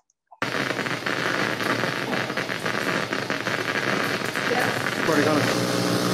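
Amplified microelectrode recording of neurons firing deep in an awake patient's brain during deep brain stimulation surgery: a steady hiss dense with fine crackling pops, starting abruptly about half a second in. It is recorded while the patient's arm is moved up and down to test whether the neurons' firing pattern changes.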